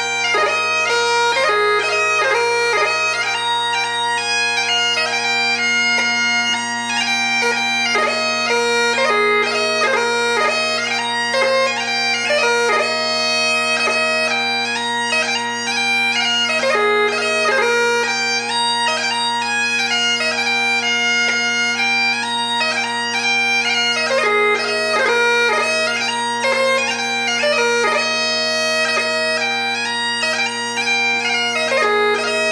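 Solo bagpipe playing a 2/4 march: the drones hold a steady low chord under the chanter's melody, with rapid ornamented notes.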